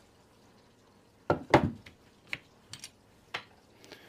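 Almost silent for about a second, then two sharp metallic knocks in quick succession and four lighter clicks spread over the next two seconds. This is an aluminium reloading block being set down and brass rifle cases knocking against it and against each other as they are handled.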